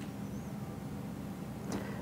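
Room tone: a steady low hum with no speech, and a short breath near the end.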